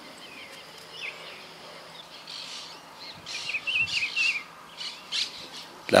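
Wild birds chirping and calling over faint outdoor hiss: a few short chirps about a second in, a wavering warbled phrase from about three to four and a half seconds, then several sharp chirps near the end.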